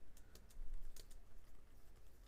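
Typing on a computer keyboard: an irregular run of key clicks as a line of code is entered.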